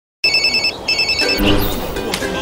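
Electronic telephone ringer trilling: two short bursts of a rapid high warble, each about half a second, with a brief gap between them.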